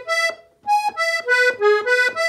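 Farinelli piano accordion playing a quick ornamental figure (adorno) of short, separate notes on the notes of an E major chord (E, G sharp, B). It breaks off just under half a second in, then the same figure starts again.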